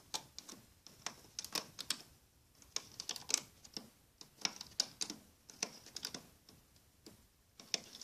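Irregular light clicks and snaps of rubber loom bands being lifted off the plastic pegs of a Rainbow Loom with a hook, several a second.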